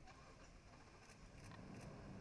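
Near silence: faint background hiss with three faint short clicks in the second half.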